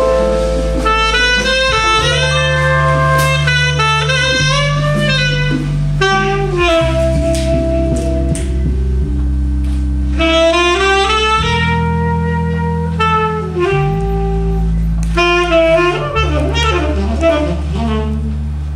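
Live jazz band with a saxophone playing the lead line, held notes with slides and quick runs, over long bass notes and drums.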